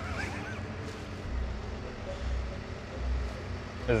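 Tractor diesel engine running, heard from inside the cab as a low rumble that swells and eases.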